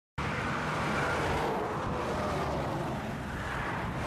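Steady freeway traffic noise: the even rush of tyres and engines of cars and trucks passing at speed, starting abruptly.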